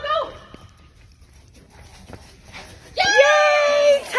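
A woman lets out a loud, long, high-pitched cheer about three seconds in, the celebration of a successful run.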